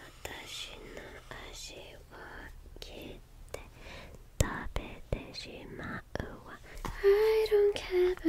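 A woman whispering softly close to the microphone, with a few sharp clicks around the middle. About a second before the end her voice turns into soft voiced singing on a few held notes.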